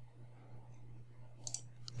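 A few faint computer mouse clicks near the end, as an instrument is double-clicked to load it, over a steady low hum.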